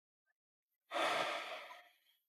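A person's long sigh: one heavy breath out that starts suddenly about a second in and fades away.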